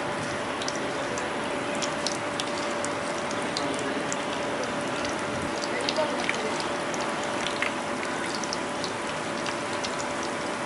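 Masala-coated prawns deep-frying in hot oil: a steady sizzle full of scattered sharp pops and crackles as more prawns are dropped in. A faint steady hum runs underneath.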